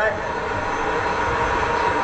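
Jet car's turbine engine running steadily: a constant whine over an even rushing noise.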